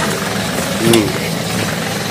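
A vehicle engine running steadily, with a short voice sound about a second in.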